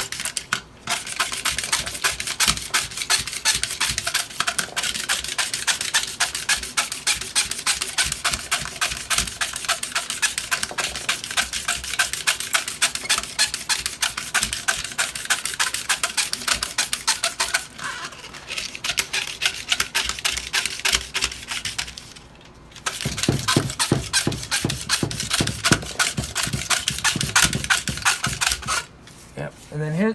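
Steel razor blades in a multi-blade holder scraping rapidly back and forth across a granite slab, shaving cured UV-curing repair adhesive down level with the stone. A quick run of rasping strokes with short pauses, one about two-thirds of the way through and one near the end.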